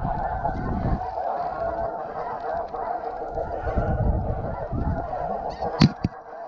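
Dense, continuous chorus of snow goose honks, many birds calling at once, with wind buffeting the microphone in gusts. A single sharp crack stands out near the end.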